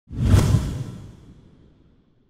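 An intro whoosh sound effect with a deep low boom under it. It swells in within the first half second, then fades away over about a second and a half.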